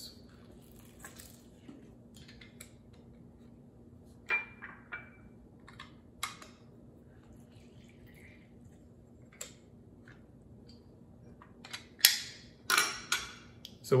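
Handheld plastic lemon squeezer being worked over a stainless steel bowl: scattered light clicks and knocks, with a brief ring about four seconds in. A cluster of louder knocks near the end as the squeezer is set down in a small ceramic dish.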